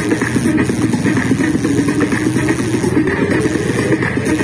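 Electronic dance music with a steady beat, with the running engine of a motorcycle underneath it.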